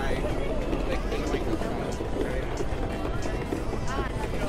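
Crowd of people chatting at once with footsteps on wooden boardwalk planks, and music playing in the background.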